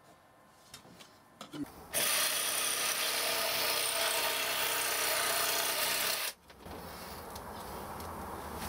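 Jigsaw making a test cut in 6 mm plywood: the motor starts about two seconds in, runs at a steady speed through the cut for about four seconds, and stops suddenly.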